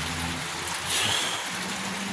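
Steady hiss of rain with a low, steady hum beneath it.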